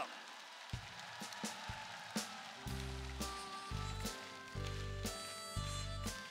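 Live band starting a trot song's intro: a few separate drum hits, then from about two and a half seconds in, keyboard and bass chords in a repeating stop-start rhythm.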